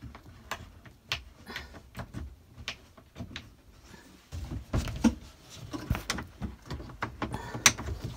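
A wooden cupboard door and its catch being worked open by hand: a run of clicks and knocks with handling rubs, busier and louder in the second half, with one sharp click near the end.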